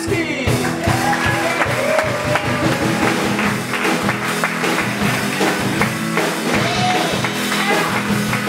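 Live rock band with electric guitars and drums playing an upbeat walk-on tune with a steady beat.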